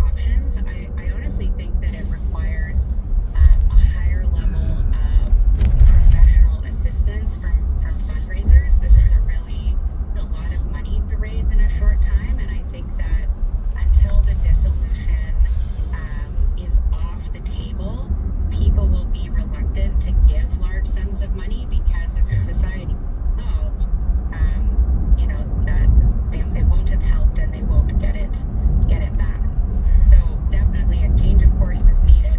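Steady low road and engine rumble inside a car driving through city traffic, with radio audio playing over it.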